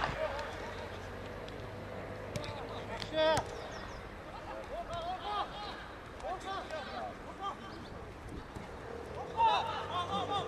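Footballers' short shouts and calls on the pitch during play, coming every few seconds over open-air field ambience, with a few sharp knocks from the ball being kicked.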